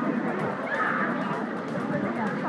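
Steady background hubbub with faint, indistinct voices and no clear foreground sound.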